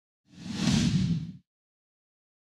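A whoosh sound effect from an animated title intro, swelling up and fading away over about a second, with a hiss up high and a low rumble beneath it.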